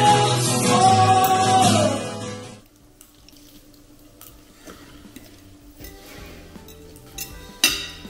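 Music with a sung melody fades out about two and a half seconds in. It leaves the small clinks of forks and knives on dinner plates, with one sharp clink near the end.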